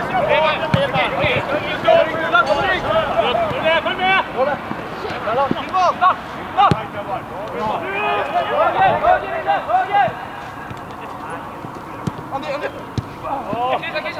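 Footballers' voices shouting and calling to each other across the pitch, many short calls overlapping, with a couple of sharp thuds in the middle; the calling drops off for the last few seconds.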